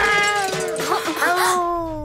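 A man wailing in one long drawn-out cry, its pitch slowly falling.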